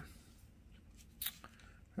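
Trading cards being handled and set down on a stack: a few soft taps and light rustles, the clearest a little over a second in, over quiet room tone.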